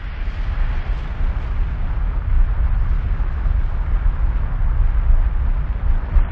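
A sustained deep rumble with a noisy hiss over it, like a long explosion or thunder roll: a trailer sound effect.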